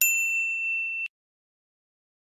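A single bright bell ding, the notification-bell sound effect of an animated subscribe end screen. It rings for about a second and then cuts off abruptly.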